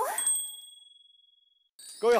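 A bright chime sound effect: a ding with a thin high ringing tone that fades away over about a second and a half.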